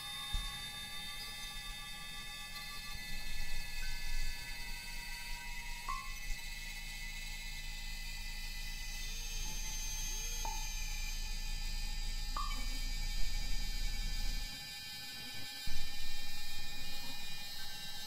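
Electronic computer music: sustained synthesizer tones layered over a low drone, with short high blips every few seconds and a few brief curving pitch glides near the middle. The low drone drops out about three-quarters of the way through.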